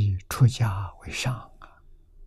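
Speech only: a man lecturing in Mandarin, a short phrase that ends just before the two-second mark, over a faint steady low hum.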